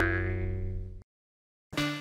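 A pitched cartoon sound-effect note from an animated logo intro, ringing on one pitch and fading out over about a second, followed by silence. Music comes in near the end.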